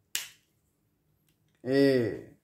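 A single sharp click shortly after the start, fading quickly. A voice then says the letter 'A' near the end.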